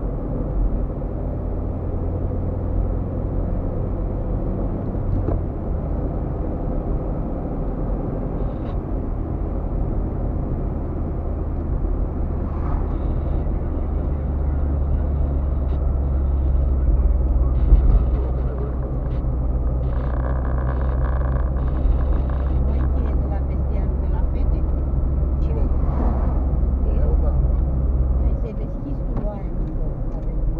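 Steady low road and engine drone of a car driving, heard from inside its cabin; the drone drops near the end.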